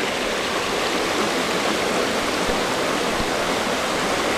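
Shallow river running steadily over rocks and stones.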